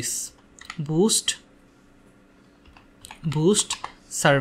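A handful of separate keystrokes on a computer keyboard, typing a short word. Two brief voiced sounds come in between, about a second in and near the end.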